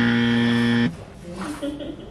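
Edited-in game-show buzzer sound effect: one flat, loud buzz lasting just under a second that cuts off abruptly. It marks a penalty, a counted touch, in the challenge.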